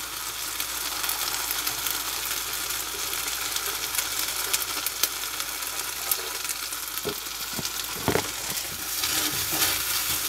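Garlic fried rice and mushrooms sizzling steadily in butter in a frying pan on a gas burner, with a few short knocks in the last few seconds.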